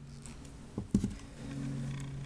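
A steady low hum with one short, sudden sound a little under a second in.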